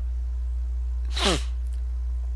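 A man's single short breathy vocal burst with a steeply falling pitch, about a second in, over a steady low hum.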